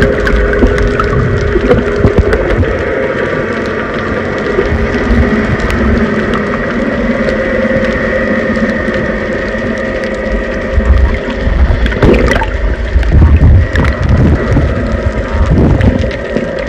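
Muffled underwater sound picked up by a submerged phone's microphone: a continuous low rumble and gurgling of water with a faint steady hum. From about twelve seconds in, the rumbling grows louder and more uneven, with clicks, as the phone comes up near snorkellers kicking with fins.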